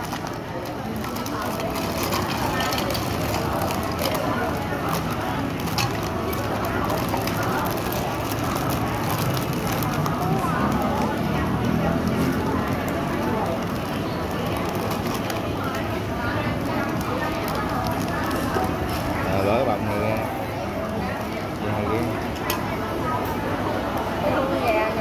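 Clear plastic bag of toy bricks crinkling and rustling as it is torn open and handled, with many small crackles over steady background chatter of a busy public place.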